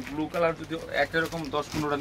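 A man's voice talking steadily; only speech is heard.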